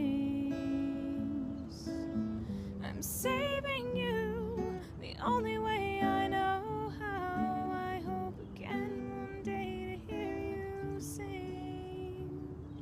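Acoustic guitar strummed and picked in a slow, gentle chord pattern. A voice sings a few held, wordless notes in the middle.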